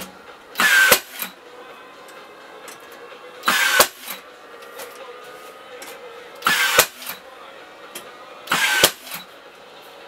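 Four short bursts of a whirring small motor, a few seconds apart, each falling in pitch and ending in a sharp click, with a faint steady hum between them.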